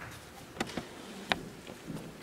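A few short, sharp clicks and knocks over faint room hum, the loudest about a second and a quarter in: handling noise of things being moved at a wooden lectern.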